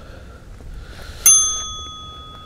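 A single bright metallic ding, like a small bell being struck once, ringing out and fading over about a second and a half.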